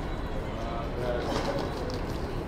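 City street ambience: a steady low rumble of traffic with indistinct voices, and a faint wavering pitched call through the middle.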